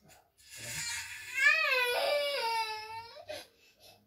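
A baby crying: one long wavering cry that rises to a peak and then falls away over about two and a half seconds.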